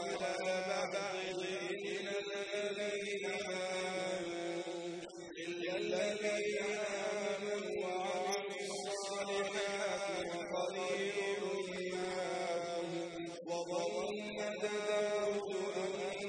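A man's voice chanting Arabic recitation in a slow melodic style, drawing out long held notes with short breaks between phrases.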